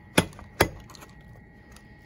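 Two sharp clacks about half a second apart: a plastic plate cover on a meal tray knocking against the plate as it is handled.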